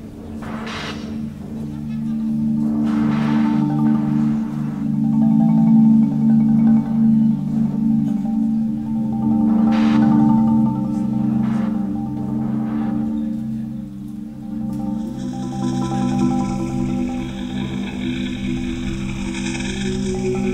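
Live electronic music: sustained low drone chords with a few struck, mallet-like notes ringing out over them. About fifteen seconds in, the chord shifts and a higher, hissing layer comes in.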